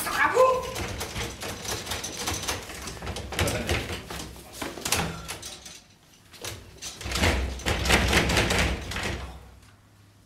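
A broken door being rattled and knocked, with a short squeak at the start and many knocks and rattles. The noise eases off briefly, then comes back loud for a couple of seconds before it stops.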